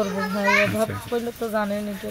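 Speech only: a woman's voice talking, with short pauses between phrases.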